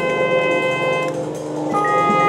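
Marching band playing a held chord that dies away about a second in, followed by a new chord swelling in near the end.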